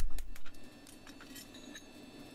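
A knock and a few metallic clinks as a steel horseshoe and smithing tools are handled and set down on an anvil, loudest in the first half second, followed by only faint clicks.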